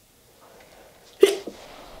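A woman sneezes once, a single sharp, short sneeze about a second and a quarter in.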